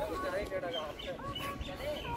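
Background chatter of distant voices mixed with bird chirps: many short, overlapping rising and falling calls and voices, none standing out.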